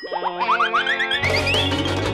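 Upbeat children's background music with a cartoon sound effect: a quick run of short rising swoops that climb step by step in pitch, with a bass line joining a little past halfway.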